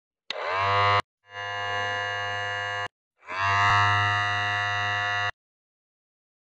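Electronic buzzing sound effect heard three times, each burst opening with a quick falling sweep and then settling into a steady buzz. The middle burst is quieter, and there is dead silence between them.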